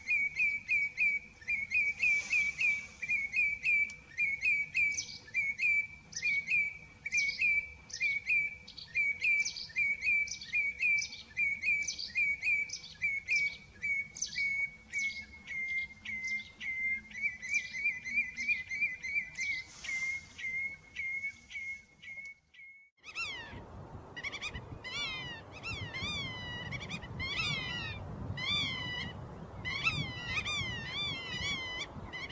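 Wading birds calling: a long series of short, high calls, two or three a second. After a brief gap about 23 seconds in, a different call takes over, with repeated arching notes about one a second over more background noise.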